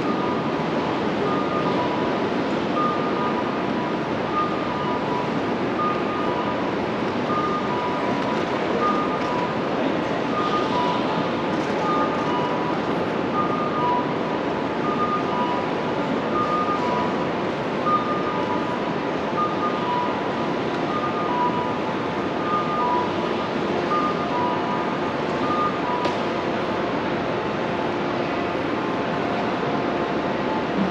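Steady roar of road traffic and ventilation noise under a covered roadway. Over it a high two-note electronic chime repeats through most of the stretch.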